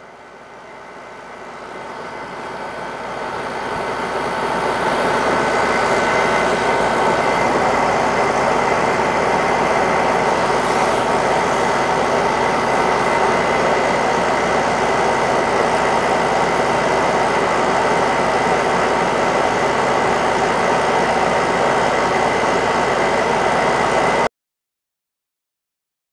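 A chiller running: a steady mechanical hum and hiss with a thin, steady whine. It swells up over the first few seconds, holds steady, and cuts off suddenly near the end.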